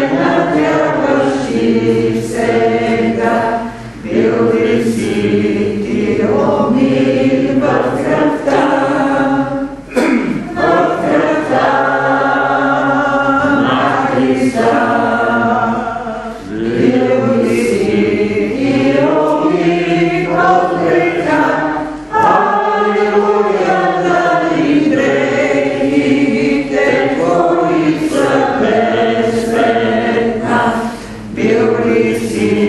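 A congregation of mixed voices singing a hymn together in long held phrases, with a short breath pause between lines about every six seconds.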